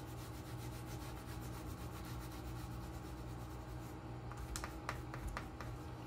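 Wax crayon rubbing on paper in quick, even back-and-forth colouring strokes, followed by a few light clicks about four to five seconds in.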